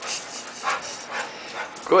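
Pit bull starting a loud, wavering whine just before the end, after a stretch of patchy splashing and dripping water noise.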